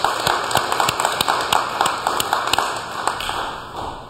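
A small crowd applauding: a dense spatter of hand claps that thins and fades out near the end.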